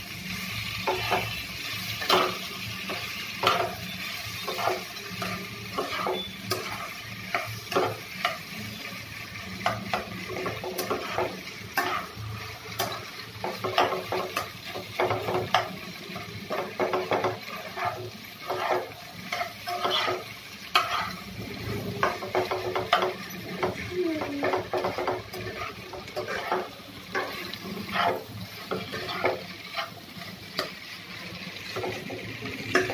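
Spatula scraping and knocking against a non-stick frying pan as diced potatoes are stirred and tossed, in irregular strokes about once a second, over a low sizzle of the potatoes frying in oil.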